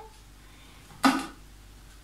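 A single short plastic clack about a second in from a Thermomix food processor as its lid is handled for opening after the blending cycle has stopped, over low, quiet kitchen room tone.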